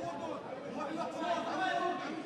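Indistinct chatter of several voices, talking and calling out, in a large hall.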